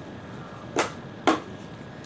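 Two short, sharp snaps about half a second apart from a deck of tarot cards being handled, the second the louder.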